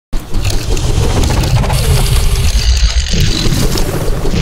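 Loud intro soundtrack with a constant deep rumble, cutting in abruptly right at the start.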